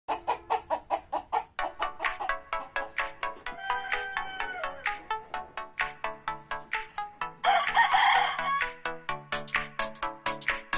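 A rooster crows once, loudly and harshly, for a little over a second about seven seconds in, over background music with a quick plucked beat of about four notes a second.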